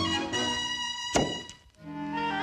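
Orchestral cartoon score with held string notes, broken about a second in by a single sharp thunk, followed by a brief near-silent pause.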